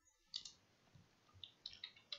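Faint computer keyboard keystrokes: one tap about half a second in, then a quick run of taps near the end.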